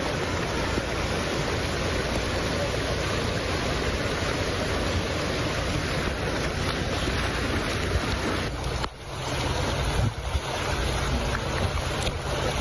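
Fast-flowing floodwater and wind buffeting the microphone, a steady loud rush with no pauses except a brief dip about nine seconds in.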